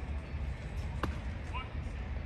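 A single sharp crack about a second in as the pitched baseball reaches home plate, over a steady low outdoor rumble.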